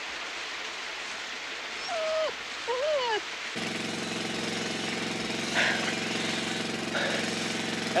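A lit fuse hissing steadily; about three and a half seconds in, a motor starts and runs with a steady hum.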